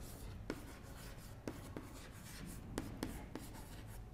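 Chalk writing on a chalkboard: faint scratching with a series of light taps as a word is written out by hand.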